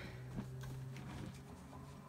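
Faint handling of paper: a cardstock tag and journal pages being worked, with a light tap about half a second in, over a steady low hum.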